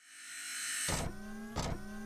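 Electronic intro sting for a title animation: a rising whoosh swells over the first second, then a deep hit brings in sustained synth tones, with a second hit about half a second later.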